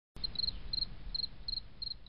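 A cricket chirping steadily, with short chirps of three or four quick pulses repeating about three times a second, over a low rumble.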